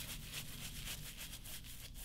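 Shaving brush bristles working a slick shave-soap lather over the cheek and neck: faint, quick scratchy swishes, several strokes a second, over a faint steady low hum.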